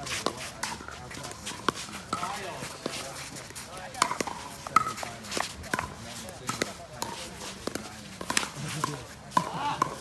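A pickleball rally: a quick, irregular string of sharp pops as paddles strike the hollow plastic ball and the ball bounces on the hard court.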